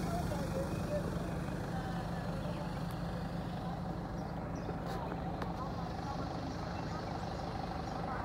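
Steady engine hum of a minibus, heard from inside its cabin.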